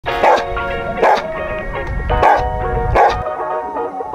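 A dog barking four times, about a second apart, over background music.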